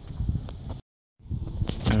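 Wind and handling noise rumbling on a handheld camera's microphone, broken about a second in by a short dropout to dead silence; a man's voice starts near the end.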